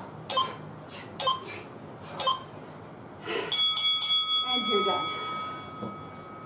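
Sharp breathy exhales with each punch, then about three and a half seconds in a bell-like round timer rings out and fades over a couple of seconds, marking the end of the round.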